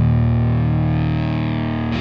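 Distorted electric guitar chord held and left to ring, slowly fading, then struck again just before the end.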